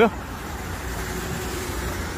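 Steady city road traffic on a wet street: a continuous low hum of car engines with tyre noise.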